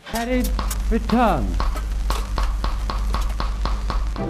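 Old washing machine switched on: a steady low motor hum starts at once, and from about a second and a half in its mechanical program dial ticks about five times a second. Two short rising-and-falling voice-like sounds come in the first second and a half.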